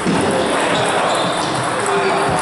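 Table tennis rally: a run of sharp clicks as the celluloid/plastic ball is struck by rubber-faced paddles and bounces on the table, over a background of voices.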